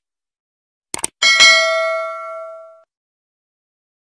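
Subscribe-button animation sound effect: quick clicks about a second in, then a bright bell ding that rings and fades out over about a second and a half.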